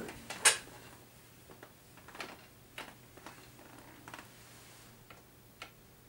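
Light clicks and knocks from two metal-bodied National Style-O resonator guitars being handled and repositioned, the loudest about half a second in, then scattered fainter ticks.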